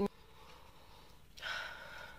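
A person sniffing: one long breath in through the nose, about one and a half seconds in.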